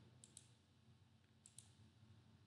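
Near silence broken by two faint double clicks, about a second and a quarter apart, each a quick press-and-release of a computer button as the presentation slide is advanced.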